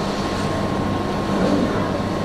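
Steady room noise in a pause between words: a low hum and hiss, with a faint steady high tone running through it.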